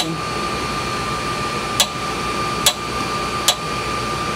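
Heat gun blowing steadily with a constant whine, heating a pump's brass shaft sleeve to soften the glue holding it on. Three sharp clicks come about a second apart over it.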